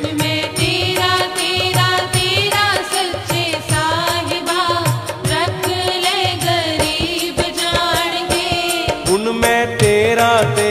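Instrumental interlude of a Sikh devotional shabad (kirtan): a wavering melody line over a held drone, with a steady percussion beat and no singing.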